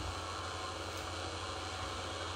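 Steady hiss with a low hum underneath: room tone and recording noise.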